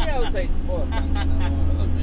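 Steady low engine drone heard inside a minibus cabin, with voices talking over it in the first second.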